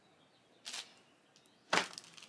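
Mighty Hoop magnetic embroidery hoop's top frame being set down onto its bottom frame through a towel: a brief rustle of handling, then one sharp clack as the frames snap together near the end.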